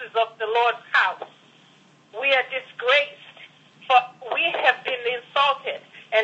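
Speech over a telephone line, thin and cut off in the highs, with a pause of about a second around two seconds in.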